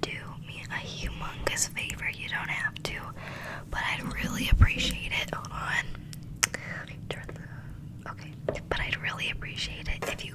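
A girl whispering close into a microphone, with sharp clicks scattered through and a loud low thump about four and a half seconds in.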